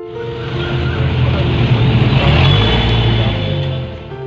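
A car engine running and revving up briefly near the middle, under a loud rushing noise, with soft piano music beneath; it cuts off suddenly at the end.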